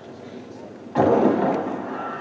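A starter's pistol fires about a second in to start a sprint race, one sharp report followed by a fading wash of noise, heard from old TV race footage played back over loudspeakers in a hall.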